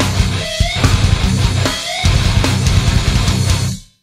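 Nu-metal band playing a heavy, low distorted guitar riff with drums. The riff breaks off twice for a moment, with a rising squeal in each break. The song ends, cutting off shortly before the end.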